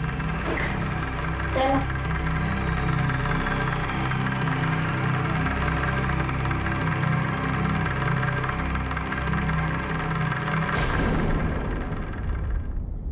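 Tense, suspenseful background music score built on sustained low notes and held tones, with a sharp hit near the end.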